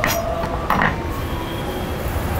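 A knife chopping cassava leaves on a wooden cutting board, with a couple of short strikes over a steady low rumble.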